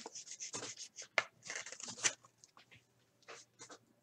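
A trading card being slid into a clear plastic sleeve and rigid top loader: soft, scratchy plastic rustling and scraping with a couple of sharp ticks, thinning out in the last second or two.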